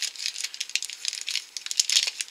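Thin plastic packaging and small plastic toy pieces being handled: a quick run of crinkling rustles and light clicks.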